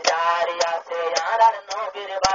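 A man singing a Rohingya tarana in short melodic phrases.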